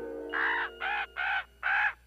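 Common raven calling four times in quick succession, harsh caws. A held note of background music lies faintly underneath during the first part.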